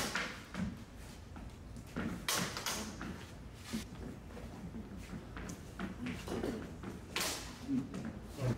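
Lightsaber blades clashing in a sparring bout in a large hall: a few sharp clacks, a pair about two seconds in and the loudest near the end.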